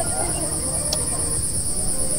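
Steady, high-pitched insect chirring, a continuous fast pulsing drone with no pauses, and a single faint tick about a second in.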